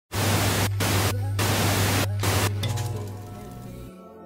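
Television static sound effect: four loud bursts of hiss over a steady low hum, breaking off about two and a half seconds in as soft music fades up and the hum cuts out near the end.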